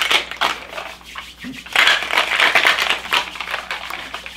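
Ice rattling inside a stainless-steel cocktail shaker shaken hard by hand: a fast, continuous rattle that gets louder a couple of seconds in.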